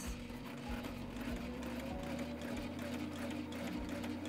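Sailrite Ultrafeed walking-foot sewing machine running steadily as it sews a straight line of stitches through fabric: an even motor hum with a faint rapid ticking of the needle mechanism.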